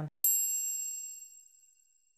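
A single bright, high-pitched chime, struck once a moment in and ringing down over about two seconds: a logo sting sound effect.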